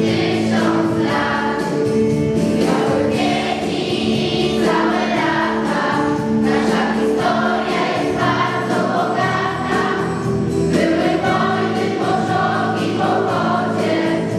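A children's choir singing a song together, with held accompaniment notes underneath.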